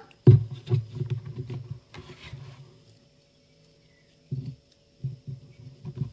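Hands handling paper and a paper pad on a tabletop: a run of soft thumps and rustles, a short quiet gap, then more handling as a metal binder clip is opened and fitted onto the pad's edge.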